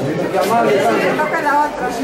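Several people talking at once in a crowded corridor: overlapping, indistinct chatter.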